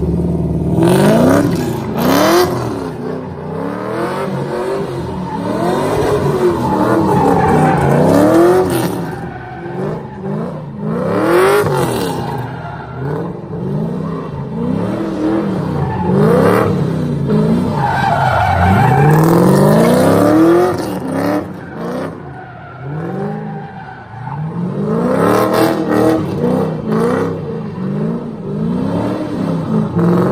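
A drift car spinning donuts on asphalt: its engine revs rise and fall over and over as the throttle is worked, while the rear tyres screech and smoke.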